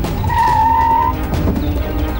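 Car tyres screeching briefly as the car brakes to a halt, with a high squeal that lasts under a second, over background music.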